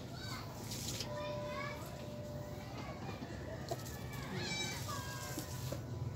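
Faint background voices of children talking and playing, with no voice close by.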